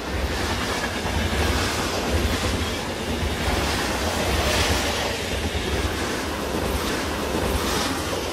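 Train passing close by: a loud, steady rumbling rush of noise that starts to ease right at the end.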